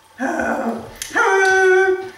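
A 13-week-old puppy giving two whining howls: a short, lower one, then a longer, steady, higher-pitched one that is the loudest sound.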